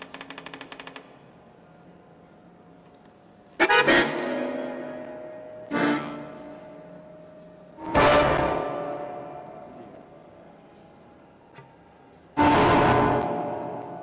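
Sparse experimental music from a violin, bayan accordion and flute trio with live electronics: a rapid flutter for about a second at the start, then a few isolated short loud notes a few seconds apart, each fading away slowly, with quiet pauses in between.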